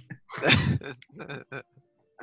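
A person laughing: a loud breathy burst about half a second in, then a few short pulses of laughter.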